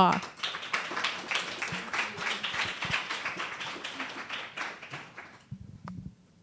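Audience applauding, fading away and ending about five and a half seconds in, followed by a single sharp knock near the end.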